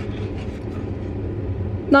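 Steady low rumble with a faint hum, running evenly under a pause in talk.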